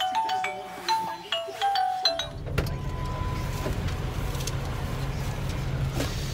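A baby play-gym toy plays a tinkly tune of separate notes with small clicks. About two seconds in it cuts to the steady low rumble of a car idling, heard from inside the cabin.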